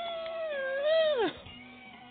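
A high-pitched voice holds one long note that rises, stays level, then drops away sharply, with a faint steady tone behind it.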